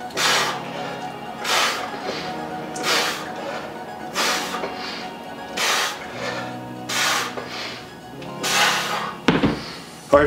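Forceful hissing exhales, one about every 1.3 seconds, in time with the reps of a set of single-arm dumbbell rows. They sit over steady background music, and a single sharp knock comes near the end.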